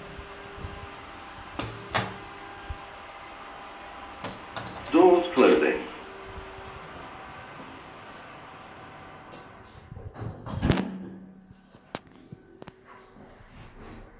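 Stannah passenger lift in service: a steady running hum with a few sharp clicks, a short spoken phrase about five seconds in, and a heavy thump near the eleventh second, after which the hum falls away.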